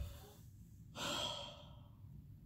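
A woman's audible sigh, one breath out starting about a second in and fading out within a second.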